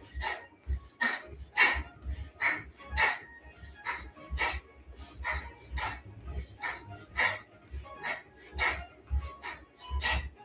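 Background workout music with a steady beat, about three sharp beats every two seconds over a low pulse.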